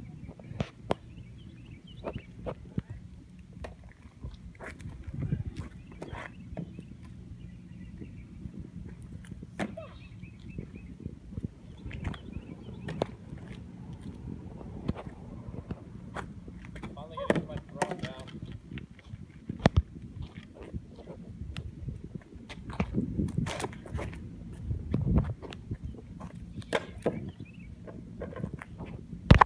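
Outdoor ambience with a steady low hum, scattered sharp taps and clicks, and faint voices now and then.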